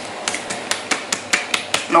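A plastic shampoo bottle being turned over and over in the hands to mix the herbs steeping in it, with light clicks of fingernails and plastic, about four or five a second.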